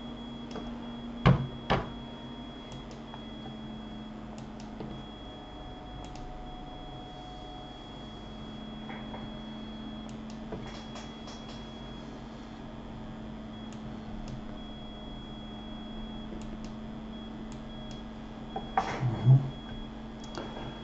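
Steady low electrical hum with a faint high whine, the room tone of a computer recording setup, broken by two sharp clicks about a second in and a few faint clicks later.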